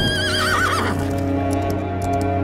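A horse whinnies once at the start, a quavering call that falls in pitch over about a second, over steady background music; hoofbeats of galloping horses follow near the end.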